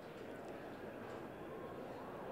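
Faint, steady background chatter and hum of a busy media hall full of people, heard through the reporter's open microphone.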